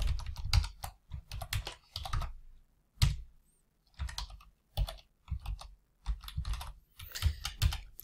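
Computer keyboard keys clicking in quick, irregular clusters with short pauses between them: keystrokes and shortcut combinations entered while working an Excel spreadsheet.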